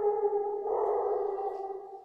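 A woman's voice chanting, holding a long drawn-out note that fades away near the end.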